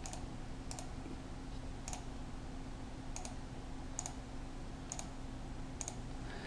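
Faint computer mouse clicks, about seven spread irregularly over six seconds, over a low steady hum.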